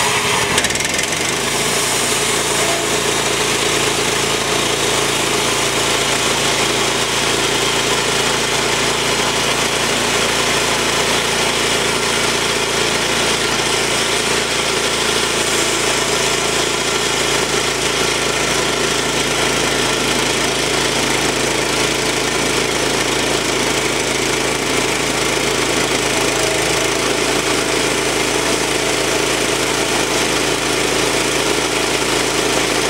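Small air-cooled engine on a portable bandsaw mill running at a steady speed, with no change in pitch as the saw head is cranked slowly toward the log.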